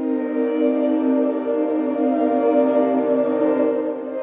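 Soundiron Sonospheres Limitless ambient pad in Kontakt 8, driven by the Phrases Tool in C minor: one sustained chord that swells in at the start and gives way to the next chord at the end.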